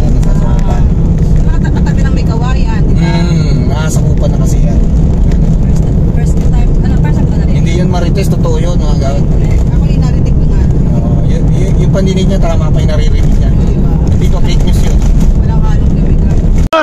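Steady low rumble of a moving car heard from inside the cabin, engine and road noise, under people talking.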